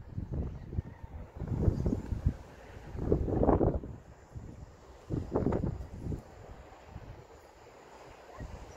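Wind buffeting the microphone in several irregular gusts, a low rumble, strongest about three and a half seconds in and easing off near the end.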